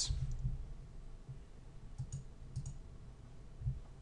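A few faint, scattered clicks at a computer over a low hum.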